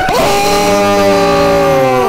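A man's long drawn-out "Ohhh!" shout in reaction, held on one steady pitch for about two seconds and dipping slightly at the end.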